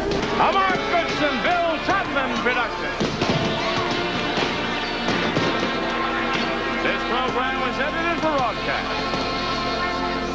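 Game-show closing theme music playing steadily, with many overlapping voices calling out over it.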